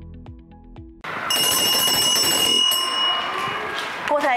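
Background music cuts off about a second in, and a loud bell rings continuously for two to three seconds, its steady high tones dying away one by one. It is the signal that worksheet time is over.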